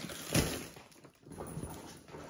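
Plastic grocery packaging, a bag of bread rolls, rustling and crinkling as it is handled, with a brief louder knock about a third of a second in.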